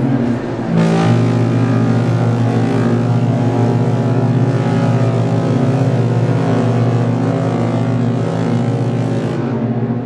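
Several ship horns sounding together in long, steady blasts. A fresh blast comes in about a second in.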